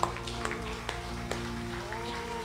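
Live worship band music: held keyboard chords with sharp taps about twice a second.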